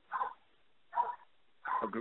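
A dog barking a few short times, faint and heard over a telephone line.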